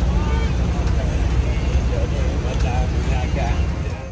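City street noise: a steady, heavy low rumble, as of traffic, under people talking.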